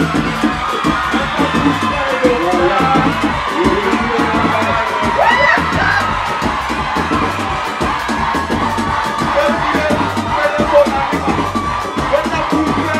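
Live band playing loud dance music with a fast, steady drum beat, over a cheering, shouting crowd.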